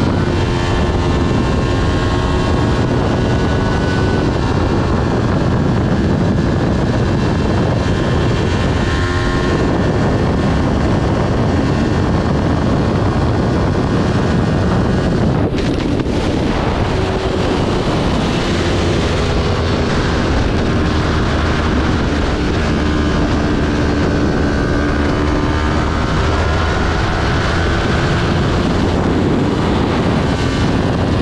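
Kawasaki Ninja 400's parallel-twin engine running at high revs under hard acceleration, its pitch climbing in several stretches with a short break about halfway through, under heavy wind noise on the bike-mounted camera.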